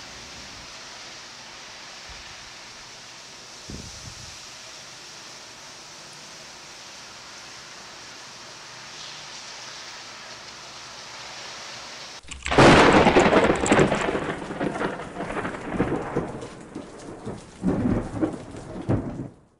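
Steady hiss of rain and wind in a storm; about twelve seconds in, a loud peal of thunder breaks in suddenly and rolls on, crackling and rumbling in waves.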